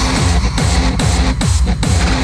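Hardstyle electronic dance track: a heavy distorted kick drum on every beat, each kick's pitch sliding down, under a dense, noisy synth layer.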